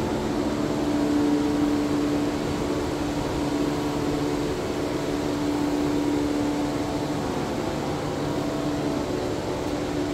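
Steady hum of an air-conditioning and ventilation system, with a low droning tone running through it that dips in level partway and comes back.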